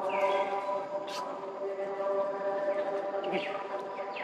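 A steady drone holding several pitches at once, with a few short bird chirps over it: one near the start, one about a second in, and a couple near the end.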